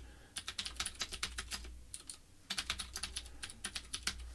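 Fairly quiet keystrokes on a computer keyboard as a short phrase is typed, in two quick runs with a pause of about a second between them.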